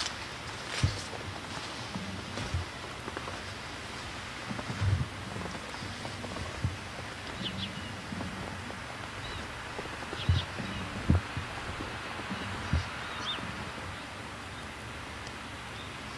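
Quiet outdoor background with a steady hiss, broken by soft low thumps at irregular intervals, seven or so, and a few faint high chirps near the middle.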